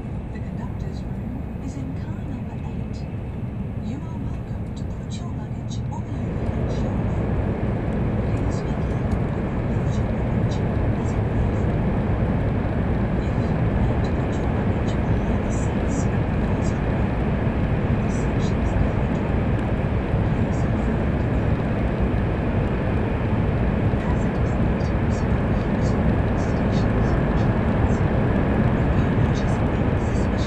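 Cabin noise of an N700 Shinkansen running at speed: a steady low rumble with faint ticks and rattles. About six seconds in it jumps suddenly to a louder, fuller rush that stays steady, as the train runs into a tunnel.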